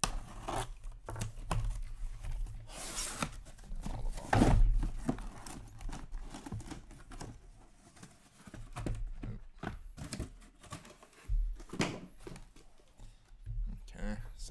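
Box cutter slitting the packing tape on a cardboard shipping case, then tape tearing and the cardboard flaps being pulled open, with scraping and knocks of cardboard and a loud rustle about four and a half seconds in.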